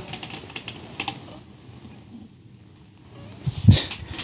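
Soft clicking and rustling of handling and body movement as a bar of soap is picked up off the floor. There is a sharper click about a second in, and a short, louder burst of noise near the end.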